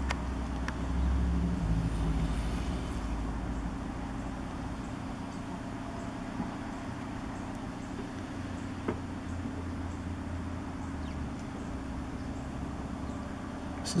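Steady low rumble of vehicle engines and traffic, a little louder for the first couple of seconds, with a few faint clicks.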